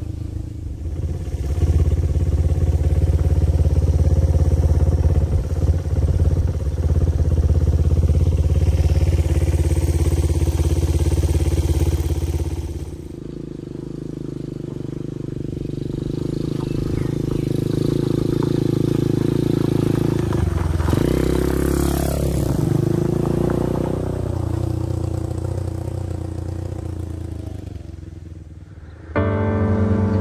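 Honda Ape 100's small single-cylinder four-stroke engine running steadily as the motorcycle rides along a gravel track. The engine note changes abruptly about halfway through, and the pitch rises and falls about three quarters of the way in.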